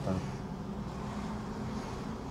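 Steady engine and tyre noise of a car driving slowly along a city street, heard from inside the car.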